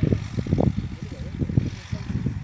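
Wind buffeting the microphone in uneven gusts, a low rumbling that rises and falls.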